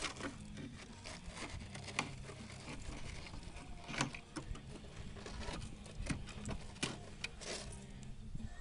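Scattered clicks and cracks of rusted rocker-panel metal and rust flakes being picked at and broken off by hand, over a steady low hum.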